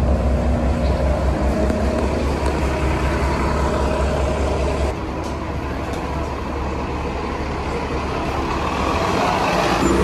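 Articulated city bus's engine running with a deep, steady rumble at the stop, its sound changing about halfway through as the bus pulls away from the kerb.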